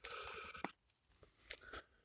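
Faint footsteps crunching on dry leaf litter: a brief breathy sound at the start, then a few soft crunches and clicks.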